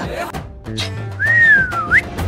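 A woman whistling through pursed lips: a single note that starts a little past the middle, slides slowly down, then swoops sharply up at the end, over background music.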